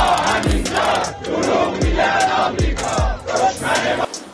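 A crowd of protesting pensioners chanting a slogan in unison, in rhythmic massed shouts. A music track's deep drum thuds sound underneath.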